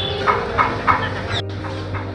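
Chicken clucking: a few short clucks about a third of a second apart, over a steady low hum. The sound cuts out for a moment about one and a half seconds in.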